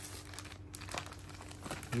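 Clear plastic garment packaging crinkling faintly as hands handle the packaged suits, with a few small ticks.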